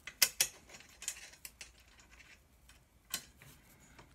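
Metal-on-metal clicks and light scraping of a corner bracket and its nut being worked along the slot of an aluminium extrusion: a few separate sharp clicks, the loudest near the start.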